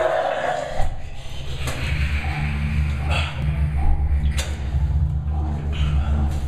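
A man retching over a bathroom sink, with a loud heave right at the start and shorter gags after it, over a steady low hum.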